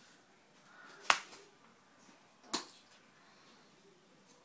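Two sharp clicks, about a second and a half apart, against a quiet background.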